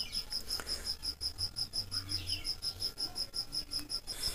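Insect chirping steadily, a high-pitched pulse repeating about five times a second, with a faint low hum underneath.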